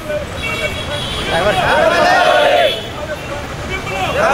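Crowd of protesters chanting a slogan in unison, in repeated shouted bursts about three seconds apart.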